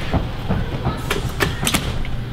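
Bare feet thumping in quick succession as people run and walk across a gym floor, with a few sharp clicks a little after a second in.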